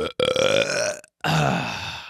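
A man belching loudly into a close microphone, two long belches of about a second each, one right after the other.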